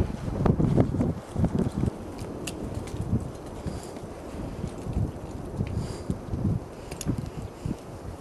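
Wind buffeting the microphone in irregular low rumbles, with a few faint clicks.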